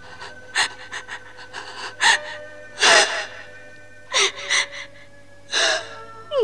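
A woman's gasping, sobbing breaths: about seven short ones, the loudest about three seconds in. Soft background music holds steady notes underneath.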